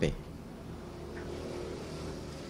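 Low steady background noise in a pause between a man's words. A faint humming tone joins it about a second in.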